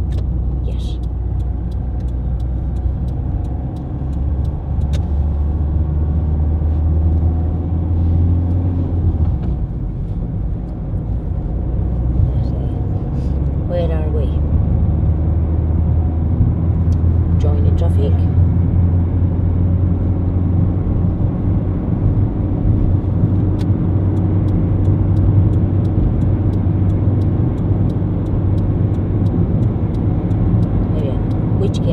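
Inside a moving car's cabin: steady low engine and road rumble, growing somewhat louder from about ten seconds in as the car gathers speed.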